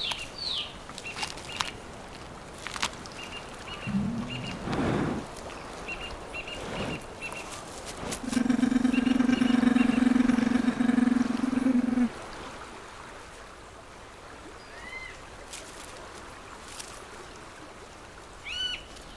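Forest ambience with a bird giving short, repeated chirps through the first seven seconds, and a brief low rising call about four seconds in. About eight seconds in, a steady low buzzing drone holds one pitch for about four seconds and is the loudest sound.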